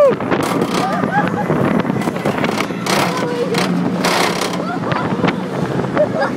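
The Smiler, a Gerstlauer Infinity Coaster, with its train running on the track: a steady mechanical hum under wind on the microphone and a few short bursts of hiss, with riders' voices over it.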